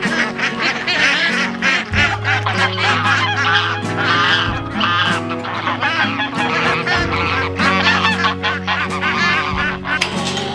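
A flock of domestic waterfowl honking and calling over and over, many short calls overlapping, over slow background music.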